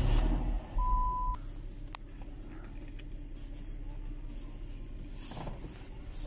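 2005 Dodge Magnum's 3.5-litre V6 starting up, flaring loudly as it catches and then settling into a steady idle. A short single electronic beep sounds about a second in.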